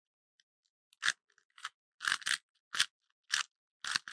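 Rubik's Cube layers being twisted by hand: about seven quick plastic clicking turns, roughly two a second, as a move sequence to orient the last-layer corners is worked through.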